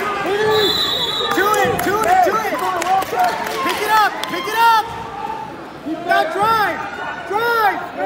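Several voices shouting over one another from the crowd and corners of a wrestling match, short rising-and-falling calls that come and go throughout.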